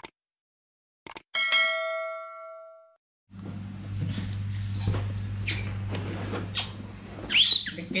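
A subscribe-button animation's clicks followed by a bell-like notification ding that rings and fades out. Then a steady low hum with light rustling, and near the end a short high squeal from a baby monkey.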